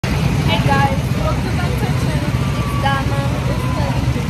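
Girls' voices talking over a loud, steady low rumble.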